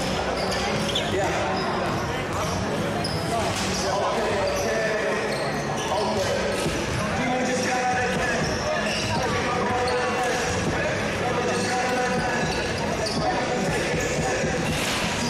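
Crowd of spectators and players chattering in a sports hall, with a basketball bouncing now and then on the wooden court.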